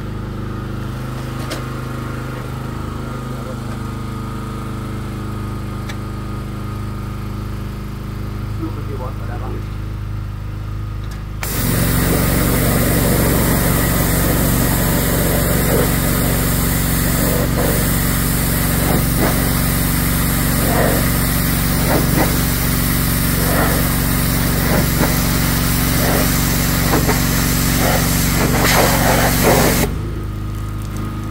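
Small petrol-engine pressure washer running steadily; about eleven seconds in the lance is triggered and the water jet hits the road sign, adding a loud steady hiss over the engine as it blasts the grime off the sign face.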